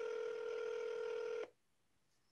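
Telephone ringback tone heard over a phone line: a single steady ring tone while the call waits to be answered, cutting off about one and a half seconds in.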